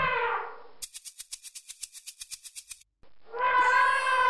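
Cartoon music and sound effects: a held musical tone fades out, then a fast high rattle of about ten ticks a second runs for two seconds, and another held musical tone starts near the end.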